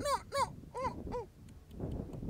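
A run of short wailing calls, each rising then falling in pitch, about four a second, stopping a little over a second in.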